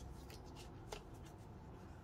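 Faint rustling and crinkling of paper sticker sheets being handled, with one sharper click about a second in.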